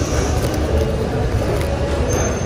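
Steady low rumble and hiss of supermarket background noise, with a brief crinkle of plastic-wrapped string beans being picked up near the end.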